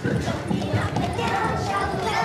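Many small feet hopping and stomping on a hard floor in quick, irregular knocks, mixed with children's voices.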